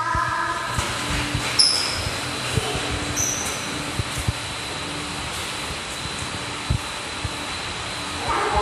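Steady rushing background noise of a busy indoor walkway, with scattered low thumps and two brief high beeps, about one and a half and three seconds in.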